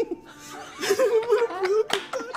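People laughing, the laughter growing louder about a second in.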